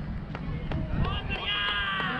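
Low wind rumble on a helmet-mounted camera's microphone, with a long, high-pitched call from a distant voice starting about a second in.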